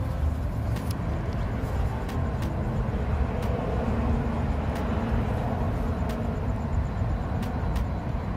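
Steady low outdoor rumble picked up by a phone microphone, with a few faint clicks.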